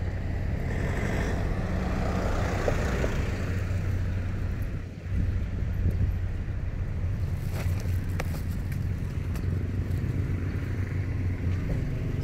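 Steady low rumble of vehicle engines around a parking lot, with a few faint clicks about eight seconds in.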